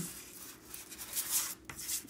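Chalk pastel stick rubbed across drawing paper in a few short scratchy strokes, colouring in an area.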